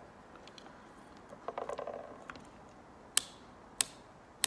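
Plastic adjustable pin end of a roller blind, its plastic cog turned by hand: a quick run of light ratcheting clicks about a second and a half in, followed by two sharper single clicks near the end.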